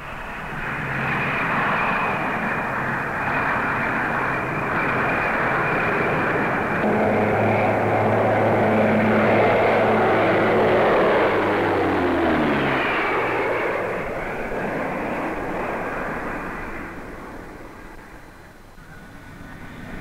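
Armstrong Whitworth Apollo airliner's four Armstrong Siddeley Mamba turboprop engines during a flypast: the engine sound builds up, drops in pitch as the aircraft passes about two-thirds of the way through, then fades away.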